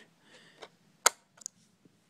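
Laptop SO-DIMM memory module (DDR PC2700) pressed down into its slot and snapping into the retaining clips: one sharp click about a second in, then a smaller click just after.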